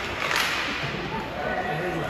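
Ice hockey play: a sharp crack about a third of a second in, a hockey stick hitting the puck, over a steady hiss of skates on ice. Distant voices call out in the second half.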